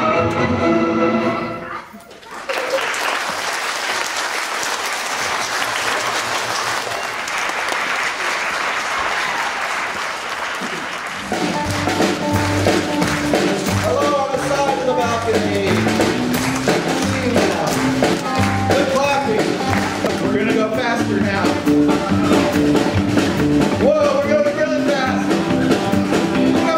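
Orchestral music ends about two seconds in and an audience of children applauds for about nine seconds. At about eleven seconds new music with a steady bass beat and a melody starts and plays on.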